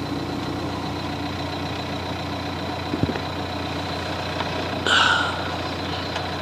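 Car engine running steadily, with a low even hum. There is a single sharp click about three seconds in and a brief higher-pitched sound near the five-second mark.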